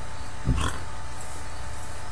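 A man's brief breathy exhale through the nose about half a second in, the tail end of his laugh, over a steady background hiss with a faint constant hum.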